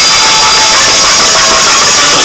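Loud, distorted hardcore dance music from a DJ mix played on vinyl turntables, here a dense, steady, buzzing wash of sound with no clear beat.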